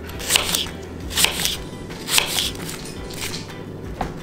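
Kitchen knife cutting through an apple and knocking down onto a wooden cutting board, three cuts about a second apart.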